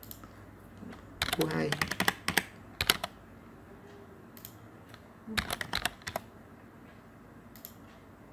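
Typing on a computer keyboard in several short bursts of rapid key clicks, then a lone click near the end.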